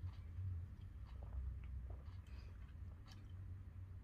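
Faint sipping and swallowing from a can of sparkling juice: a few soft gulps and small mouth and can clicks over a low steady hum.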